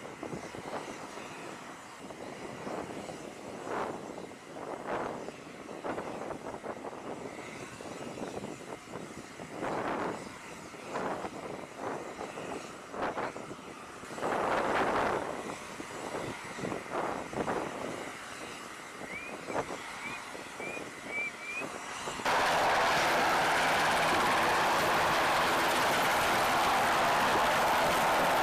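Uneven rushes of wind and machinery noise, swelling and fading, with a few short high chirps near the end of that stretch. About 22 seconds in, it cuts abruptly to the loud, steady sound of an MH-60S Sea Hawk helicopter's rotors and twin turboshaft engines in a hover.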